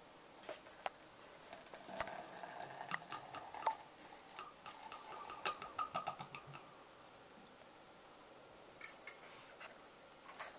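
Porter poured from a swing-top growler into a tall pilsner glass: a few clicks as the growler tips, then about five seconds of glugging and splashing that rise in pitch as the glass fills, before the pour stops. A couple of clicks near the end as the growler is handled.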